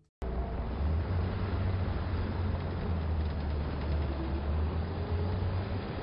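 A car driving: a steady low engine and road rumble that cuts in suddenly just after the start and holds even throughout.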